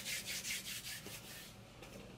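Hands rubbed briskly back and forth against each other, a quick, even swishing that fades out about one and a half seconds in.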